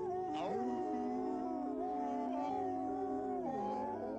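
Several voices howling together in harmony, holding long notes that slide slowly from one pitch to the next.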